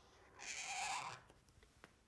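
Marker pen drawing a letter on flip-chart paper: one stroke of the pen, under a second long, then a faint click.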